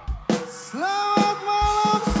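Live band music: a few sharp drum hits, then a held note that slides up into pitch and is sustained, with the band coming back in near the end.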